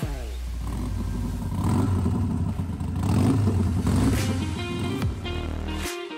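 Harley-Davidson Sportster 1200cc V-twin engine running and being revved through Vance & Hines slip-on exhausts. It swells louder about two seconds in and again a second or so later. Music plays underneath.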